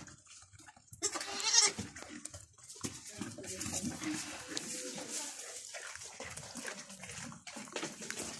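Goats eating from a basin of chopped vegetable scraps and hay, with steady crunching and rustling as they nose through the bowl. The loudest stretch is a brief burst about a second in.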